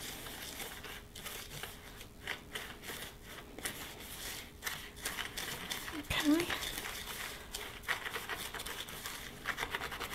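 Granulated sugar and cinnamon being stirred in a plastic bowl with a small whisk: a soft, irregular gritty scratching and rustling with light ticks.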